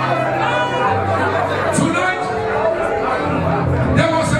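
Church praise music: held bass notes sustained under voices singing and calling out, with the congregation joining in.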